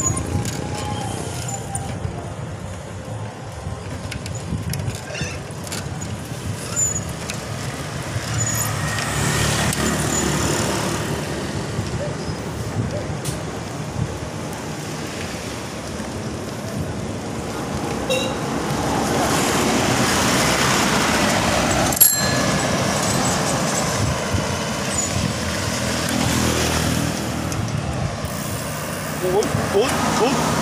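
Road traffic passing the bicycles: motor vehicles swell past twice as a steady rush of road noise, with a single sharp click partway through.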